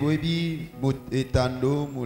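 Soft, sustained keyboard chords with a man's voice over them, drawn out in long tones without clear words.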